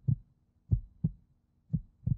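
Heartbeat sound effect: deep, short thumps in lub-dub pairs about once a second. It is a suspense cue under a countdown.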